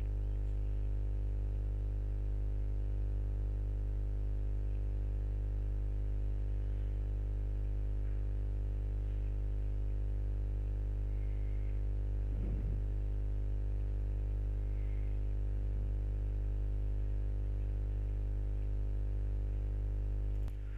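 Steady electrical hum with a buzzy stack of overtones, unchanging throughout, as from mains hum picked up in the recording chain. A brief faint rustle comes about halfway through.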